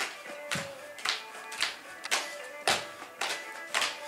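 Irish step dancing: the dancer's shoes strike the floor in sharp taps about twice a second, with lighter taps between, over instrumental music.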